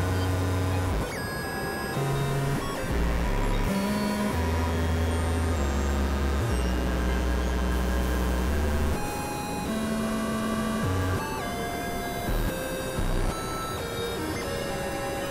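Experimental electronic synthesizer music: low bass drones and thin high steady tones that shift in blocks every second or so over a constant noisy hiss, with a long held low drone in the middle.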